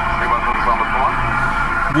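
Drive-thru order speaker switched on, giving off a loud steady electronic hum with the order-taker's tinny, thin-sounding voice coming through it.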